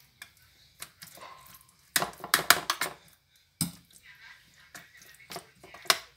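A spoon knocking and scraping against an aluminium baking tray while meat sauce is spread across it: irregular sharp clicks and scrapes, busiest about two seconds in.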